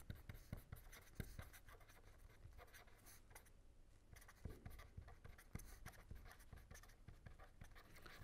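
Faint scratching of a pen on paper as a line of words is written by hand, in short irregular strokes.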